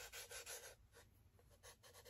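Near silence: faint rubbing of hands on a bare, sanded wooden plate, a few soft strokes in the first second.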